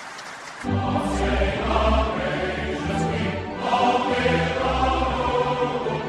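Many voices singing a hymn together over sustained low accompanying notes. It starts up loudly about half a second in after a quieter opening.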